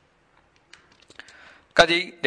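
A pause in a man's speech filled with a few faint, scattered clicks and a soft rustle. His voice comes back loudly near the end.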